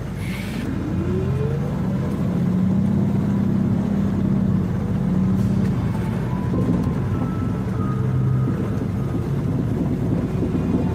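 Bus engine and road noise heard from inside the passenger cabin: a steady low rumble, with a whine that rises in pitch over the first couple of seconds.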